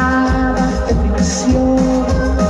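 A grupera band playing live through a stage sound system: continuous amplified music with a steady bass line under held melody notes that step from pitch to pitch.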